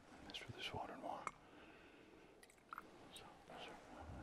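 A priest's quiet, almost whispered prayer in two short phrases, with a few light clicks in between.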